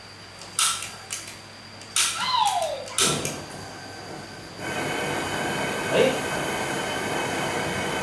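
A gas burner's igniter clicking a few times, then the gas catches about four and a half seconds in and the burner runs with a steady hiss.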